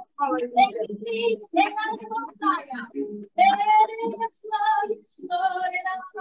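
A woman singing a slow worship song, with long held notes and short pauses between phrases.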